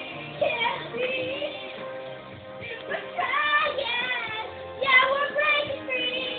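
A girl singing a pop song along with a backing track, in short phrases of held notes that slide in pitch.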